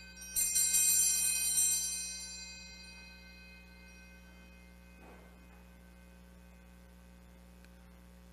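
Altar bells struck once, just after the start, a cluster of high ringing tones that fade away over about three seconds, over a low steady hum. The ringing marks the elevation of the consecrated host.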